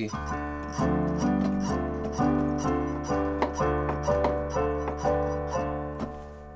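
Keyboard playing alternating F and G major triads over a held low D minor bass, chords struck about twice a second and left to ring, giving a D minor seventh sound.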